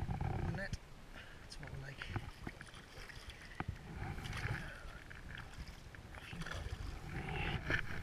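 Soft water splashing and sloshing around a landing net as it is dipped and lifted at the bank with a trout in it, with light clicks of handling. A low wind rumble on the microphone fades out about a second in.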